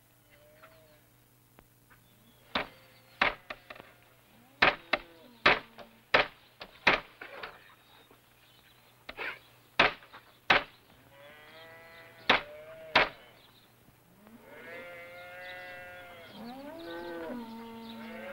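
Cattle bawling: several drawn-out moos in the second half. Earlier, a run of about a dozen sharp knocks at uneven intervals.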